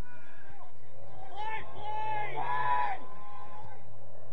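Soccer players shouting to each other across an open pitch during play, with a couple of loud, high-pitched calls in the middle. A steady low hum runs underneath.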